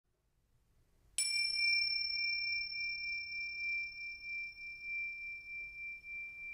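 A small bell or chime struck once about a second in, ringing one clear high tone whose brighter overtones die away quickly while the main tone fades slowly with a gentle wavering.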